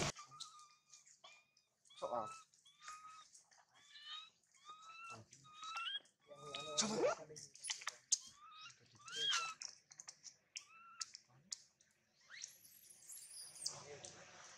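Newborn macaque infant crying: a long series of short, high-pitched cries, one or two a second, which stop a couple of seconds before the end. Faint clicks are heard between the cries.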